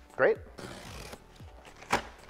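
A short rustling scrape lasting about half a second, then a single sharp click near the end: handling noise as a man gets up and reaches to a taped cardboard shipping box to open it.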